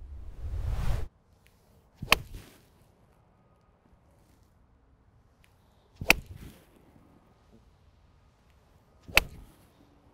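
A swelling whoosh that cuts off about a second in, then three crisp impacts of a TaylorMade Stealth 7-iron striking golf balls off turf: about two seconds in, about six seconds in, and near the end.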